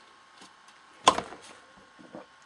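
A small cup set down on a table: one sharp knock about a second in, with a couple of faint taps around it.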